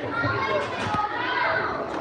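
Many children's voices talking and calling out over one another, the hubbub of kids playing together.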